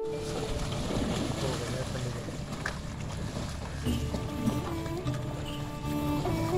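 Water splashing as water buffalo and cattle wade into a river, with a steady rushing noise. A flute melody comes in over it about four seconds in.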